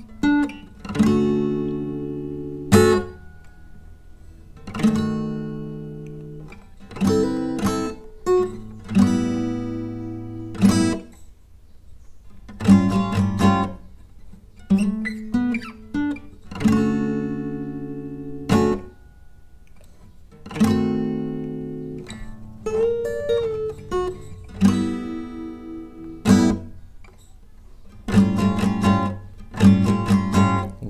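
Acoustic guitar playing a riff slowly, with slides and a string bend, in short phrases of plucked notes and chords that are each left to ring and fade.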